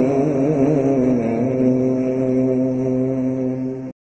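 A man's voice reciting the Quran, drawing out the last syllable of the verse in a long melodic held note. The pitch wavers for the first second and a half, then holds steady until it is cut off abruptly just before the end.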